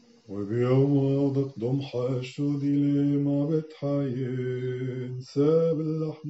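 A male voice chanting the Maronite consecration in Syriac, in long held notes on a few pitches. It starts about a quarter second in and breaks off briefly three or four times for breath.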